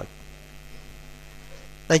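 Steady faint electrical hum in a pause between words, with a man's voice starting again near the end.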